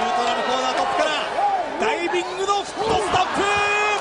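An excited voice calling out over wrestling match footage, with one sharp thud about three seconds in and a long, steadily held call near the end.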